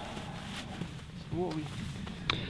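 Quiet outdoor background noise with a brief, faint voice about two-thirds of the way through.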